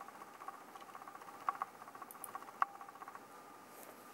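A handful of light, scattered clicks of a computer mouse, irregularly spaced, one of them doubled, over a faint steady background hum.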